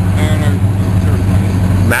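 Pontiac GTO's V8 engine idling with a steady low rumble while the car rolls slowly past at close range.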